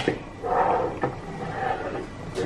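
A sharp click of small plastic toy pieces, then a child's low, muffled murmur lasting about a second and a half, with another small click partway through.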